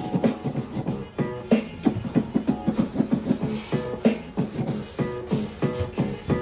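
Background music with a steady beat and repeating short chord stabs.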